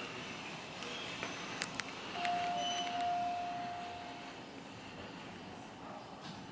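A single steady electronic beep of constant pitch, lasting about two seconds and starting about two seconds in, preceded by a few short clicks.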